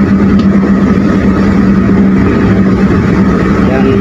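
Steady drone of a car moving at highway speed, heard from inside the cabin: engine and tyre noise with a constant low hum, unchanging throughout.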